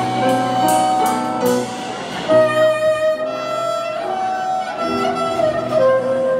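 Clarinet playing a melody in long held notes over a band's accompaniment.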